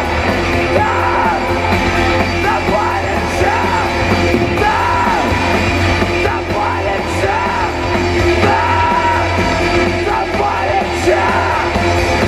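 A rock band playing live through a PA: electric guitars, bass and drums with vocals, loud and continuous. A melody rises and falls in repeated phrases about every one and a half to two seconds.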